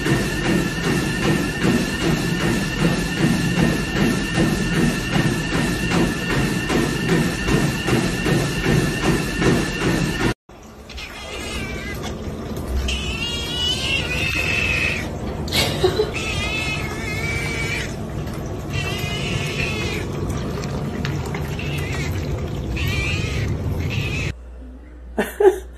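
Music with a steady beat and held tones until a sudden cut about ten seconds in. After the cut, a cat meows repeatedly, in several separate wavering calls.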